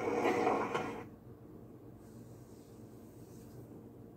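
Movie soundtrack from a television, heard in the room: about a second of noisy movement sound with a few knocks, then it cuts off suddenly to a faint steady hum.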